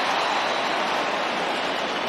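Stadium crowd noise heard through the broadcast: a steady, even wash of many voices with no single voice standing out, easing slightly in level.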